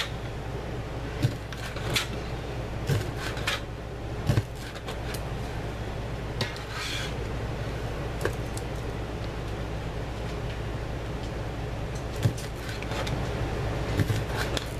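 Meat cleaver chopping through smoked sausage onto a plastic cutting board: scattered sharp knocks, most in the first few seconds and a couple more later, over a steady low hum.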